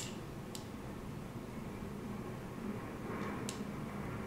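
Quiet room tone with two faint, sharp ticks, one about half a second in and one near the end.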